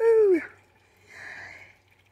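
A woman's short wordless vocal sound, falling in pitch, followed about a second later by a faint breathy exhale.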